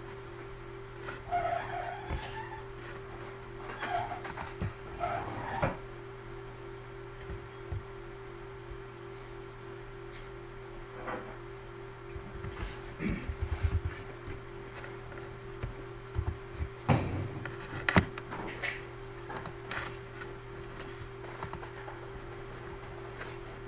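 Scattered computer keyboard and mouse clicks, in short clusters with the sharpest clicks near the end, over a steady low electrical hum.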